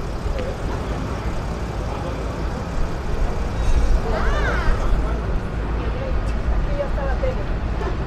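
Street ambience: a steady low rumble of road traffic with indistinct voices of passers-by. About four seconds in there is a brief high sound that rises and falls.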